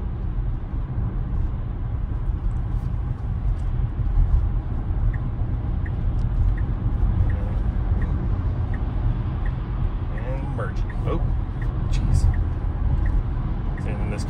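Steady low road and tyre rumble inside a Tesla's cabin at highway speed on a slushy road. In the middle stretch the turn signal ticks faintly, roughly once or twice a second, as the car signals a lane change.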